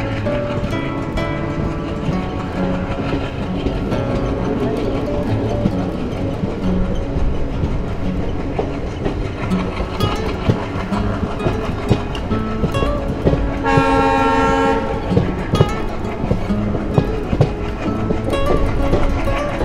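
Passenger train running, with wheels clacking over the rail joints. Near the end the diesel locomotive's horn sounds one blast lasting about a second.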